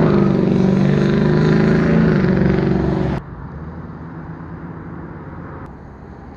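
Detroit Diesel 8V71 two-stroke V8 diesel with its blower, idling steadily. The sound cuts off abruptly a little past three seconds in, leaving a much fainter steady rumble.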